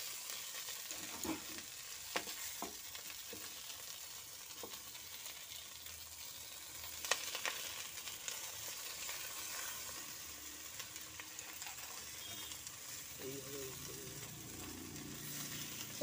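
Banana-leaf-wrapped hilsa parcels sizzling steadily in a little mustard oil in a kadai. A few light clicks come in the first half as they are turned over by hand.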